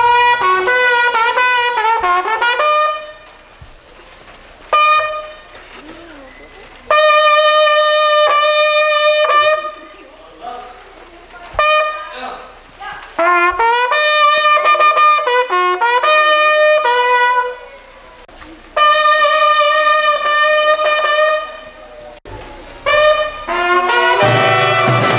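Bugles of a school drum-and-bugle corps (banda de guerra) playing a call in short phrases of loud, bright notes, with pauses between the phrases.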